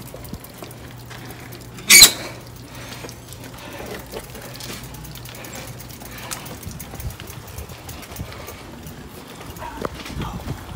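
A single sharp knock or clatter about two seconds in, over a steady low hum that stops a little after six seconds, with faint small movement sounds.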